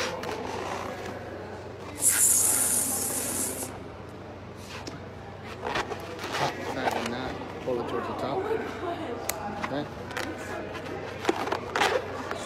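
Red five-inch round latex balloon: a loud rush of hissing air at its neck about two seconds in, lasting over a second. After that, squeaks and rubbing of the latex as the balloon is handled, tied and twisted, with a few sharp clicks near the end.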